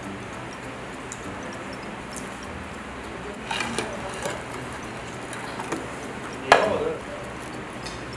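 Eating and tableware sounds over steady restaurant room noise: a fork and dishes clinking while fried food is tipped over a bowl of tteokbokki, with a few light clicks and one sharp clack about six and a half seconds in.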